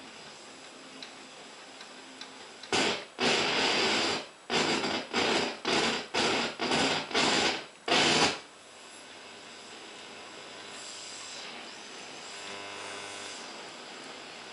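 Rigonda Symphony radio being tuned by hand across the band: a run of about eight loud bursts of static, each under a second, as the dial passes signals, then a low steady hiss and hum between stations.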